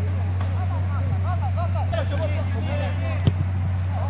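Footballers shouting and calling to each other across the pitch over a steady low hum, with the sharp thud of a ball being kicked about three seconds in.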